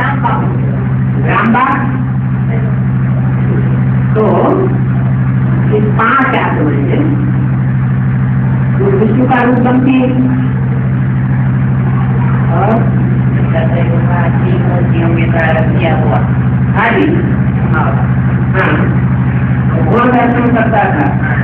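Indistinct speech in short, broken phrases over a loud, steady low-pitched hum.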